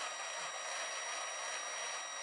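Steady faint hiss with thin, high-pitched whine tones running through it: the recording's own background noise, with no tool running.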